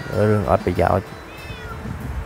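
Domestic tortoiseshell cat meowing loudly, a few insistent calls in the first second.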